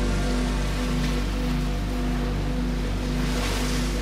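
Calm background music of low, sustained held notes, mixed with the wash of ocean waves that swells toward the end.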